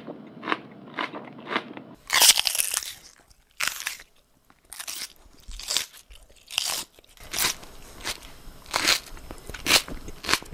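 Close-up crunching bites and chewing of crisp food, a crunch about every half second to a second. About two seconds in, the sound changes from a thin, hissy cheap headphone mic to a clearer, brighter Sennheiser MKH 416 shotgun mic, with quiet gaps between the crunches.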